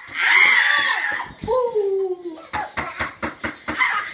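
Children shrieking and laughing in play: a loud high-pitched squeal in the first second, a falling cry, then a quick run of short laughs near the end.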